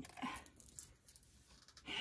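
A short, faint breath about half a second in, then quiet room tone in a small room.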